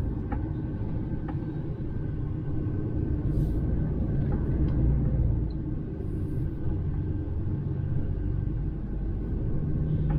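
Steady low engine and road rumble heard inside the cab of a DAF XF 530 tractor unit as it drives.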